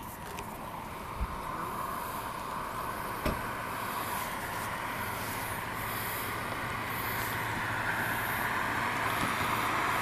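Steady road-traffic and vehicle noise, slowly growing louder toward the end, with two faint clicks, one about a second in and one about three seconds in.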